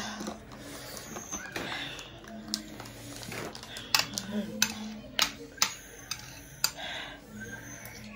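Eating sounds at a table: metal chopsticks and mouth noises give a handful of sharp, separate clicks through the middle, with breathy noise near the start and a faint steady low hum underneath.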